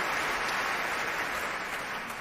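Large concert-hall audience applauding steadily, beginning to die down near the end.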